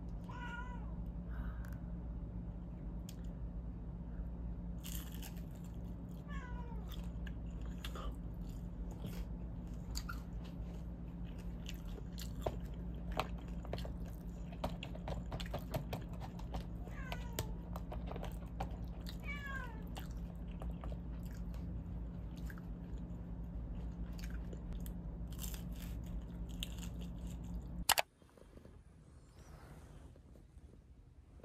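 Eating sounds: chewing and chopsticks clicking against plastic takeout bowls over a steady low hum, while a cat meows several times in short falling calls. Near the end there is a sharp click and the background hum drops away.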